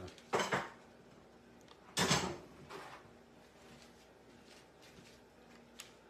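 A metal whisk clinking and scraping against a glass measuring jug as the butter tart filling is poured from it: two short clatters, about half a second in and again around two seconds, with a fainter one just after.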